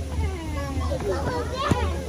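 Several children's voices chattering and calling out over one another while they play, with a sharp knock near the end and a steady low hum underneath.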